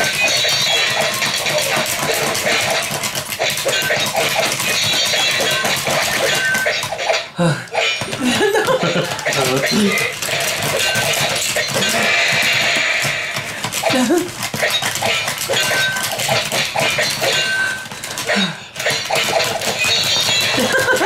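Fast, continuous plastic clicking and clattering from Akedo battle figures being worked by their handheld controllers during a fight, with a person's breathy sighs and laughs over it.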